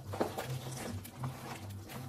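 Meat and stock in a pot being stirred with a wooden spoon, with a few light knocks and faint wet sounds from the liquid, over a steady low hum.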